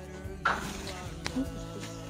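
Background music, with a sudden plastic bag rustle about half a second in as a wrapped package is handled and lifted from a cardboard box, followed by a couple of small clicks.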